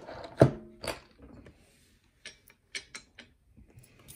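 Handling noise from a lock cylinder and a bench vise. There is a sharp knock with a brief metallic ring about half a second in, then fabric rustling close to the microphone, then several light clicks of small metal parts on the bench.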